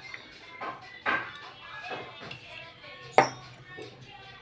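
Bundle of bamboo satay skewers threaded with boiled beef skin being handled and set down: a few light clatters, then a sharp knock about three seconds in.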